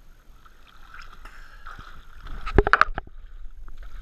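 Water sloshing and lapping against a waterproof action camera held at the surface, with a quick run of sharp splashes about two and a half seconds in.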